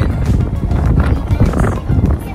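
Background music with a heavy low end.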